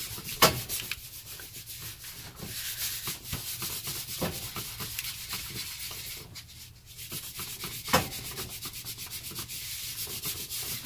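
Cloth towel rubbed briskly back and forth over paper, a steady scratchy scuffing of many quick strokes as it smudges and blends crayon on the sheet. Two louder knocks stand out, about half a second in and near the eight-second mark, with a brief lull in the rubbing just before the second.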